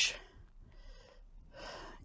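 A man's breathing: two soft breaths between phrases of speech, one about a second in and one near the end.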